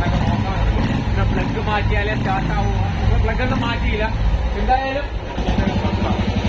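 Royal Enfield single-cylinder engine running with a low, steady pulse, on a bike just started cold after standing unused for five years.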